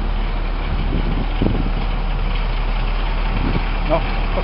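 Diesel engine of a 2003 International 7400 rear-loading packer truck running steadily at a low, even drone.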